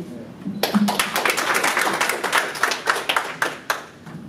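Audience applauding: a crowd's hand clapping starts about half a second in, carries on densely and stops near the end.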